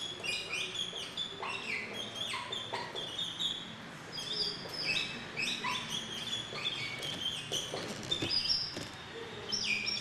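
Many small birds chirping at once: a dense, overlapping chorus of short high calls and falling notes that goes on without a break.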